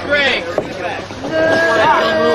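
Raised voices yelling without words: a short rising shout at the start, then a long drawn-out call beginning about one and a half seconds in, with a quick swoop in pitch near the end.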